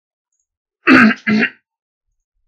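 A man clearing his throat with two short bursts in quick succession, about a second in.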